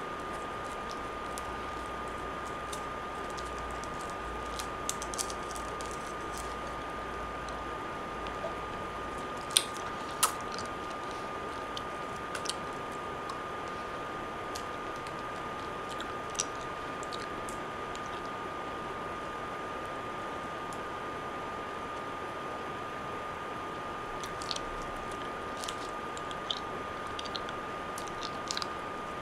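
Steady hiss with a thin constant whine, broken by scattered small clicks and mouth noises from a cough drop being sucked and chewed. Two sharper clicks come about ten seconds in.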